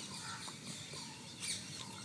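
Faint birdsong: small birds chirping in short, high squeaks, with one slightly louder call about one and a half seconds in.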